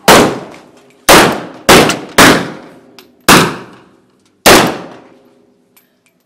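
AK-pattern rifles fired into the air as a funeral gun salute: six single shots at uneven intervals, each with a fading echo.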